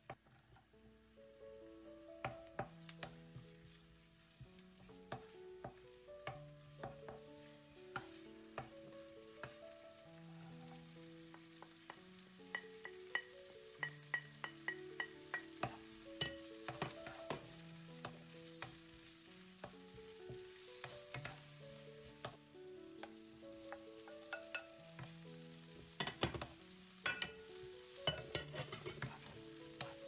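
Wild onion and bracken fern shoots frying in oil in a non-stick pan: a light sizzle with clicks and taps as the pieces are dropped in and stirred, including a quick run of ticks about halfway through. Soft background music with a slow melody of held notes plays under it.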